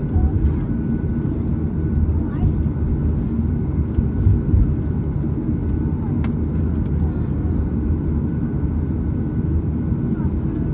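Cabin noise of a Boeing 737 airliner taxiing: a steady low rumble of the engines at idle and the airframe rolling over the taxiway.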